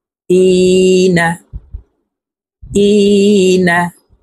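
A man's voice twice chanting one long, drawn-out syllable, each held at a steady pitch for about a second and ending in a short slide: the lengthened vowel of an Arabic madd letter recited in Quran-reading drill.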